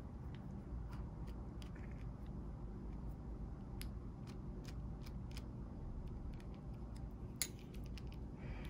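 Faint, scattered light clicks and ticks of hands handling the small plastic and metal parts of a Tamiya Mini 4WD car, its rollers and screws, over a low steady hum.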